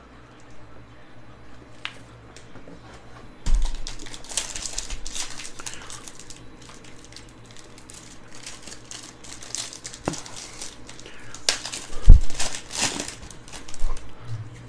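Foil wrapper of a Panini Score football card pack crinkling in gloved hands as it is torn open. A soft thump comes about three and a half seconds in and a louder one near the end.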